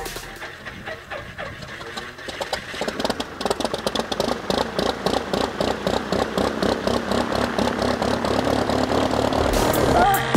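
Saab T-17 Supporter's four-cylinder Lycoming piston engine starting: it catches about two and a half seconds in, then settles into a fast, uneven idle.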